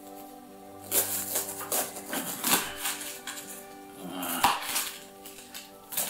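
Background music with held tones, over a small kitchen knife cutting through a head of Napa cabbage onto a wooden board: a handful of separate cuts at uneven intervals.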